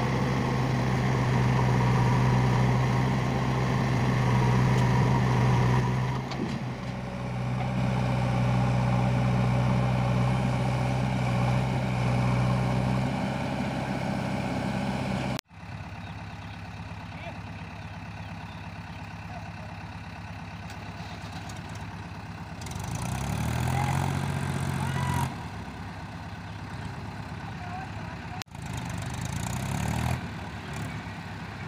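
Diesel engines of a farm tractor and a backhoe loader running steadily with a deep hum. About halfway through the sound drops to a quieter level, and about three-quarters through an engine revs up for a couple of seconds and settles again.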